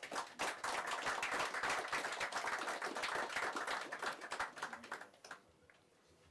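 Audience applauding at the end of a talk: many hands clapping together, building in the first half second and dying away about five seconds in.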